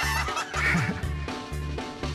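Several men laughing hard, over background music with a steady bass beat of about two pulses a second.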